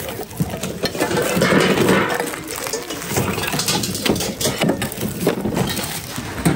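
Hands rummaging through a bin of secondhand goods: plastic bags and packaging rustling, with short knocks and clinks of hard items, and other shoppers' voices behind.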